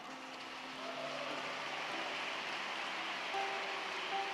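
Congregation applauding, a steady clatter of many hands that swells over the first second and then holds, with quiet held musical notes underneath.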